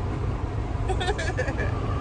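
Cargo van driving at highway speed, heard inside the cabin: a steady low rumble of engine and road noise. A brief voice sound comes about a second in.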